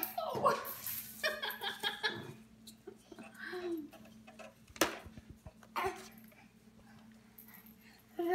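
Small dog whining and yipping in short high cries, most of them in the first couple of seconds, with a single sharp knock near the middle.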